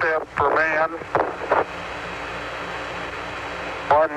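Archival Apollo 11 radio transmission: a short, unclear stretch of voice over static in the first second and a half, then a steady hiss of radio static.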